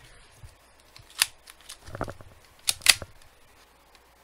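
Cheap Chinese plastic spring airsoft pistol (Kang Nam, Beretta-style) being loaded and cocked by hand: four sharp plastic clicks and snaps, the last two close together near the end.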